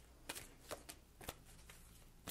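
A deck of oracle cards being shuffled by hand: a few short, faint card slides, about four or five in two seconds.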